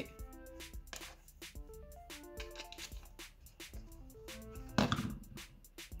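Background music: short melodic notes stepping up and down over a light beat of about two ticks a second. About five seconds in there is a brief, louder noise.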